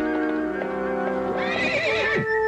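Background score of held notes, and about a second and a half in a horse whinnies, a wavering call that rises and falls in pitch.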